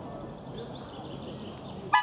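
A loud, short honking toot with a high, squeaky, many-toned sound starts just before the end, over faint background noise.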